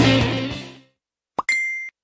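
Rock music with guitar fading out in the first second, then silence. Near the end, a short pop followed by a brief, steady high-pitched electronic beep about half a second long that cuts off suddenly.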